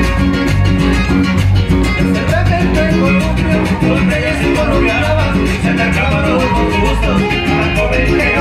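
A live band plays Latin dance music loudly through the PA, with guitars over a steady bass beat. A wavering melody line comes in a couple of seconds in.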